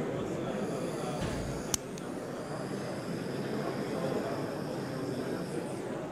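Steady rushing hiss of a small handheld gas soldering torch heating a part until the solder melts and flows into the joint, with one sharp click just under two seconds in.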